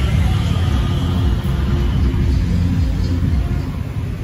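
A loud, steady low rumble with no music yet, heard just before a karaoke backing track starts.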